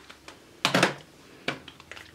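Small plastic clicks and taps of makeup compacts being picked up and handled, with a cluster of quick clicks near the end. A brief vocal sound comes just after halfway.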